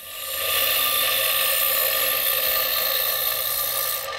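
A Darex bench sharpener's thin abrasive disc grinds a TIG tungsten electrode spun in a cordless drill chuck. It makes a steady, high grinding hiss over a motor whine, building up in the first half second and then holding even.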